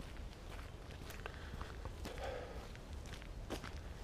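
Faint footsteps of a person walking on a wet, muddy dirt path, a few soft irregular steps over a low steady rumble.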